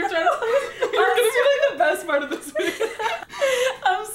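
A woman laughing hard, in near-continuous bursts, with snatches of speech mixed in.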